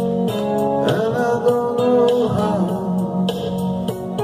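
Backing track of a soft-rock ballad: guitar over a steady drum beat.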